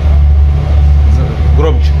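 Steady low drone of a ship's engines heard inside the passenger saloon of a ferry.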